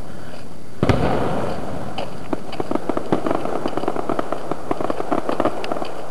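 Fireworks display: a shell bursts with a sharp bang just under a second in, followed by about three and a half seconds of dense, rapid crackling pops.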